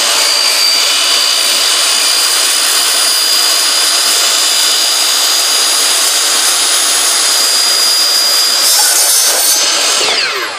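DeWalt miter saw running at full speed with a steady high whine as its blade is pulled down through a vinyl (PVC) rain gutter, cutting it to length.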